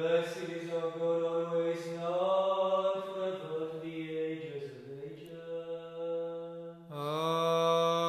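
A man's voice chanting an Orthodox liturgical prayer on long held notes with little change of pitch, pausing briefly about seven seconds in before the next phrase begins.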